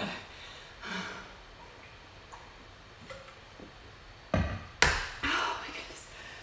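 Two sharp knocks in quick succession about four and a half seconds in, from a stainless-steel insulated water bottle being handled and set down; otherwise quiet room tone.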